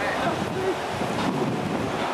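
Steady wind noise on the camcorder microphone, with faint voices of a group talking in the background.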